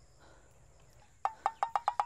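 A rapid chirping call starting just over a second in: short, evenly spaced notes of one steady pitch, about eight a second, over a faint steady high hiss.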